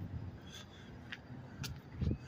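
Faint low rumble of distant road traffic, with three short, light ticks spaced about half a second apart.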